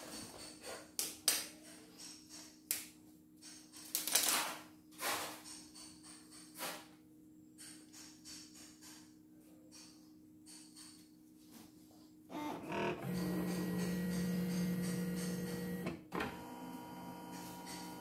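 CNY E960 embroidery machine powering up: scattered clicks over a faint low hum for about twelve seconds, then the embroidery unit's carriage motors run with a steady buzzing tone for about four seconds, a little softer for the last two, as the machine calibrates its hoop position.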